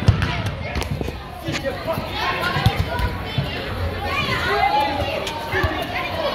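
Kids and spectators shouting in a large echoing indoor hall, with sharp thumps of a soccer ball being kicked, the loudest right at the start and another a little under halfway through.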